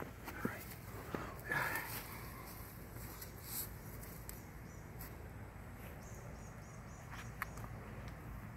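Quiet outdoor background: a steady low rumble with a few light clicks and knocks in the first two seconds and again near the end, and faint, short, high chirping in the second half.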